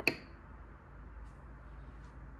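A single sharp clink as a ceramic espresso cup is set down upside down on the rim of an enamel mug, followed by a faint steady low hum.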